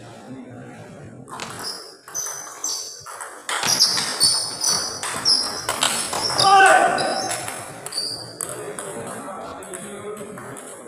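Table tennis rally: the plastic ball clicks off paddles and the table, with short high squeaks and voices around it. It grows louder and busier about three and a half seconds in.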